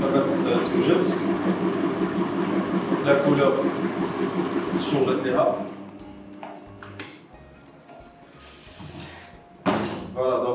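Stand mixer motor whirring with its balloon whisk running in a steel bowl, whipping génoise batter; it stops about halfway through. Near the end come a click and then a loud clunk as the mixer head is tilted up.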